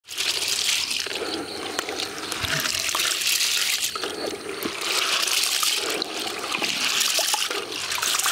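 Hands rubbing and squeezing soaked wheat grains in water in a plastic bucket, the water sloshing and splashing in repeated swells, washing the grain to loosen and rinse off the bran.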